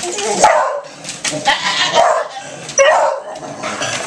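Dog barking and yipping at a toy helicopter, about four loud barks spread out with short gaps.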